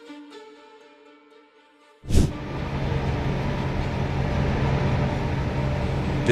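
Soft sustained string music fades out. About two seconds in, a sudden loud thump opens a steady rumble of vehicle noise with a low hum that runs on unchanged.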